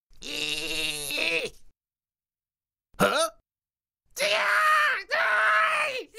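Cartoon character voice acting with no sound effects or music: a strained, pained groan lasting about a second and a half, a short yelp about three seconds in, then two long pitched cries near the end.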